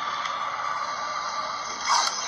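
Steady, even hiss of noise from a video's soundtrack playing through a phone's speaker, with a louder burst of sound near the end.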